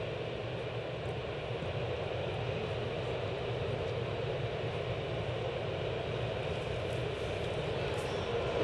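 Steady ballpark background noise: an even, featureless wash with no distinct events.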